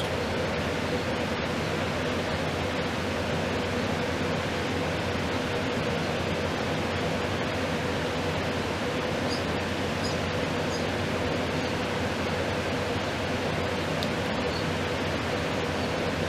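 Steady hiss of room noise with a faint steady hum, unchanging throughout.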